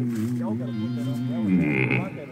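A bass singer holds a very deep sustained note through a PA system, wavering slightly, then slides lower and ends about two seconds in.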